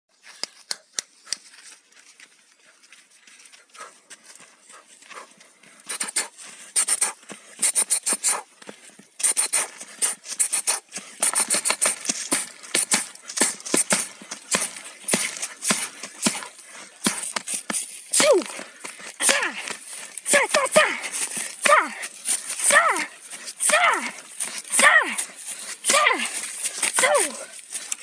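Rapid flurries of cloth-wrapped fists striking a birch trunk and splintering its wood, sparse at first and then a dense stream of blows from about six seconds in. From about two-thirds of the way through, short shouts falling in pitch come with the combinations, about one a second.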